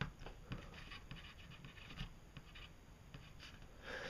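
Pencil writing on cardboard: faint, short scratching strokes as a word is written out.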